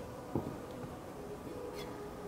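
Quiet room tone with one soft knock about a third of a second in, from a metal scraper working over a packed almond-cookie mold as the excess powder is cleared off.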